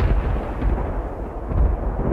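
Thunder rumbling: a deep, rolling sound that swells again about a second and a half in.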